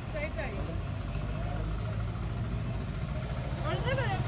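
Vehicle engine idling close by with a steady low throb. A woman's voice talks briefly at the start and again near the end.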